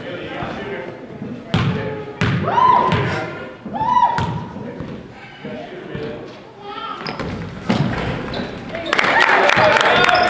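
Basketball bouncing on a hardwood gym floor a few times, with sneakers squeaking, in an echoing gym. Near the end comes a dense stretch of squeaking shoes and scuffling as players run.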